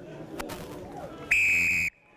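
A referee's whistle blown in one long, loud blast, most likely the full-time whistle, cut off suddenly. Before it there is low crowd noise at the ground and a sharp click.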